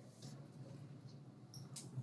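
Near-silent room tone in a small room: a faint steady low hum and hiss, with a brief faint rustle near the end.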